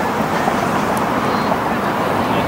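Steady outdoor noise on the camera microphone at a soccer match, with faint distant shouts from players and spectators.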